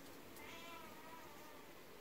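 A faint, wavering, drawn-out cry in the background, starting about half a second in and lasting about a second, over low room hiss.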